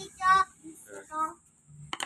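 A child's voice, two short high-pitched vocal sounds in the first half, then a sharp click near the end.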